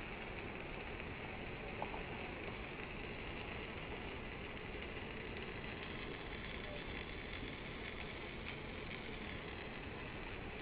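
Pancake frying in hot oil in a nonstick pan: a steady sizzle, with a few faint crackles in the second half.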